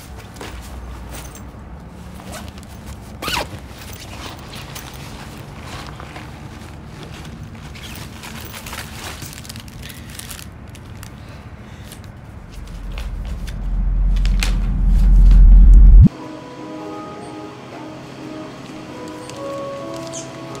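Clothing rustles close to the microphone, then a low rumbling riser swells for a few seconds to a loud peak and cuts off abruptly. Light music with sparse plucked-sounding notes follows.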